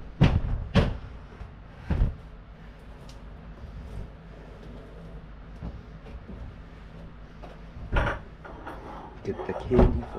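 Sharp knocks and bumps of household items being handled and set down. There are two close together at the start, one about two seconds in, and a louder cluster near the end.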